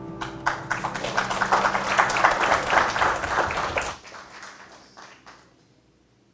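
A church congregation applauding a piano piece, with the last piano notes fading at the start. The clapping swells, holds for about four seconds, then dies away.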